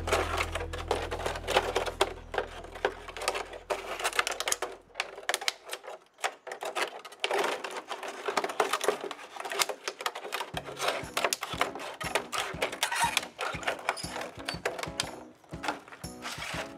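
Scissors cutting through a thin plastic water jug: a rapid, uneven run of snipping clicks and plastic crackle, with a short pause about six seconds in.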